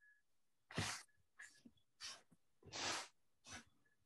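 Dry paper towel rubbing over rough watercolour paper, wiping off dried salt, in about five short, faint swishing strokes.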